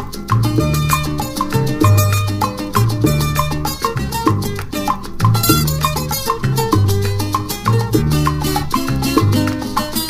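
Salsa band playing an instrumental passage with no singing: a repeating bass line under piano and horn-section notes, with percussion keeping a steady beat.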